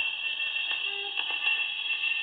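Surface hiss and frequent crackling clicks from a worn 78 rpm shellac record playing on a gramophone, with faint instrumental notes of the song's introduction underneath.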